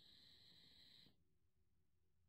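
Near silence, with a faint steady hiss for about the first second as a draw is taken on an Eleaf iStick 20W vape with a tank atomizer; the exhale that follows is silent.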